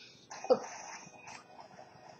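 A woman's short "ooh" about half a second in, then faint room sound.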